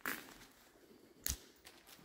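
Footsteps on a debris-strewn floor: a crunching scrape at the start and a sharp crack with a thump about a second and a quarter in.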